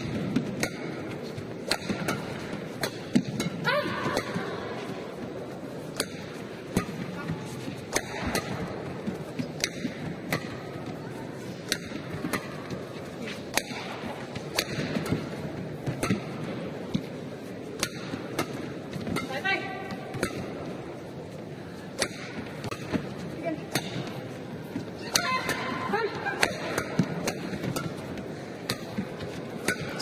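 Badminton racquets striking a shuttlecock back and forth in a long rally, a sharp crack about once a second at an uneven pace, over the low murmur of an arena crowd. Short squeaks, typical of court shoes on the mat, come in now and then.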